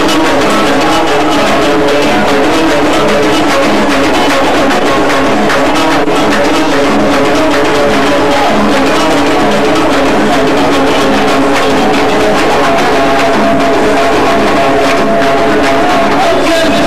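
Moroccan folk band playing live: a banjo and drums with a steady beat, loud throughout.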